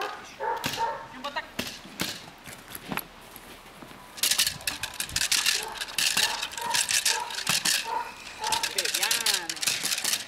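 A dog biting and tugging a jute bite sleeve, with a rapid, irregular crackling from the grip and the sleeve that starts about four seconds in and keeps going.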